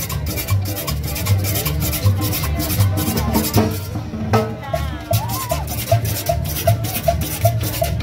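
Live Latin dance band playing: a handheld metal scraper (güira) scraped in a quick steady rhythm over an upright bass and drum, with accordion carrying the melody. The scraping breaks off briefly about halfway, then picks up again.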